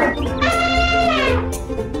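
Background music with a steady beat, over which a long animal-call sound effect sounds from about half a second in, sliding down in pitch as it ends.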